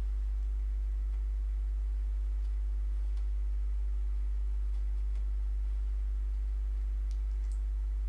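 A steady low hum, with a few faint clicks scattered through it.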